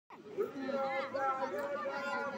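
A woman talking, with other voices chattering in the background.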